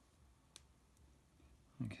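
Near silence with one faint, sharp click about half a second in and a fainter one a moment later, from drawing compasses being handled on the drawing board.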